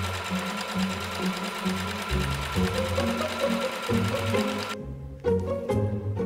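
Electric sewing machine stitching at speed with a fast, even run of needle strokes, stopping abruptly near the end. Background music with a bass line plays throughout.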